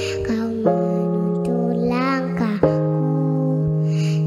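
Electronic keyboard playing sustained chords that change about every two seconds, accompanying a young girl's sung praise song, with her voice coming in between the chords.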